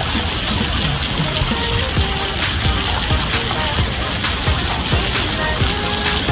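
Steady rush of fountain water jets spraying and splashing, with music playing over it.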